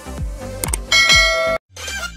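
Logo jingle music with a steady beat of low thumps, topped about halfway through by a bright, ringing bell-like chime. The music cuts off suddenly, and after a brief gap a new music track begins.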